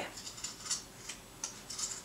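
Scissors snipping through loops of wound yarn, a few short, sharp snips spread over two seconds.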